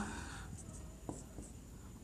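Faint scratching of a marker pen writing on a whiteboard, a few short strokes.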